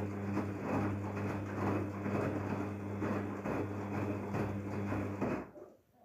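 Daewoo DWD-FT1013 front-loading washing machine in its wash cycle, the drum tumbling the laundry through water: a steady hum under swishing and sloshing that swells every second or so. The sound cuts off suddenly about five and a half seconds in.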